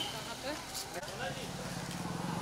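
Busy street background: faint voices of people talking and road traffic, with a low steady engine hum coming in during the second half.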